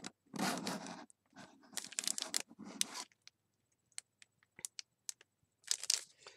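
Clear plastic packaging of a stamp set crinkling as it is handled, in several bursts over the first three seconds and again near the end, with small clicks between.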